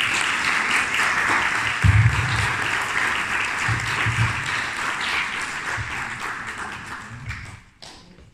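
Audience applauding, starting strongly and dying away shortly before the end, with a few low bumps along the way.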